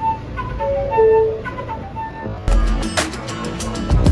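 A small transverse flute playing a tune of short separate notes over the low rumble of a subway car. About two and a half seconds in it cuts abruptly to background music with a steady beat.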